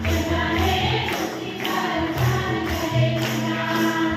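A church congregation singing together over instrumental backing, with hand clapping in time.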